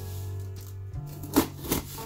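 Background music with a steady bass line, over which a small knife slices through the packing tape of a cardboard box, giving two short sharp crackles in the second half.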